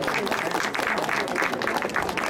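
A small crowd applauding: a steady patter of many hand claps.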